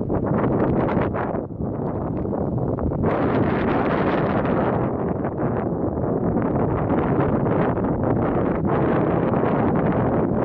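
Wind buffeting the microphone of a camera on a moving bicycle, a steady rushing noise that turns brighter and hissier about three seconds in.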